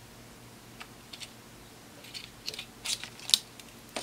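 Light metal clicks and scrapes as a thin tool works the pressed-in rear cover off a small printer stepper motor's steel can. The clicks are scattered, come more often in the second half, and the loudest falls near the end as the cover comes loose.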